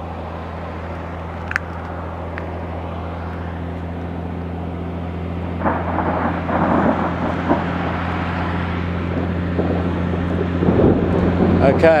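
Road traffic passing, over a steady low hum; the traffic grows louder from about halfway through.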